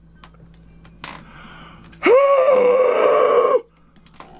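A man's long drawn-out exclamation of disbelief, a stretched "look" held at one high pitch for about a second and a half and falling slightly at the end. A short sharp breath in comes about a second before it.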